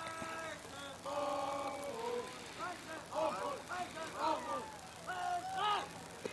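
Faint, distant voices at a baseball field calling out and shouting, with several drawn-out calls.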